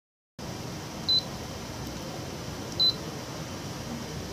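Key-press beeps from the touch-screen control panel of a Canon imageRUNNER ADVANCE C2220i as it is tapped with a stylus: two short, high beeps about a second and a half apart, over a steady low hum.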